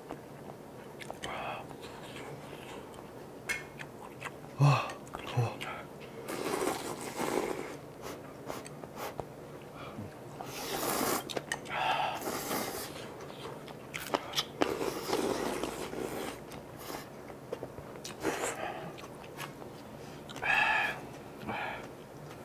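Close-miked eating of spicy instant ramyeon noodles and green onion kimchi: several long, noisy slurps of noodles, the loudest around the middle, between chewing and scattered light clicks.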